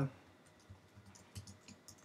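Computer keyboard being typed on: a run of faint, irregular keystroke clicks, several a second.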